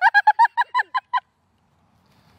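A rapid run of about ten short, high honk-like calls, about eight a second, each on the same pitch, that cuts off abruptly after about a second into dead silence.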